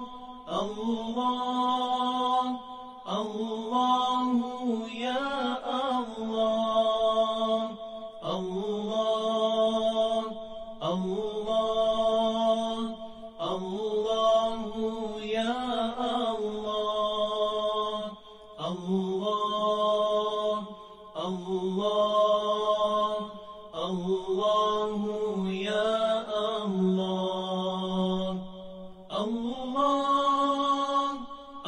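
A voice chanting a melody in long held, ornamented phrases of a few seconds each, with short pauses between them.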